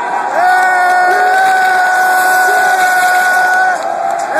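A single long, held shout or call from a voice close to the microphone, gliding up at the start, holding one pitch for about three seconds and dropping off near the end, over crowd noise in a gym.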